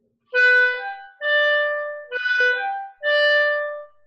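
Clarinet playing a short phrase in four note groups, each opened with a sharp accented attack that then tapers. This is the 'microburst' technique: a quick burst of air that accents the first note of each group.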